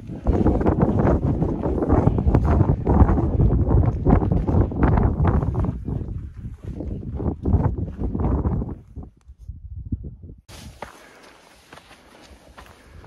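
Wind buffeting a phone's microphone in loud, uneven gusts, with footsteps on a rocky trail. Near the end it drops to a quieter, steady hiss.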